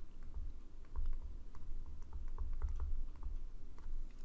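Digital stylus writing on a tablet surface: a run of small, irregular clicks and taps as a word is handwritten, over low bumps.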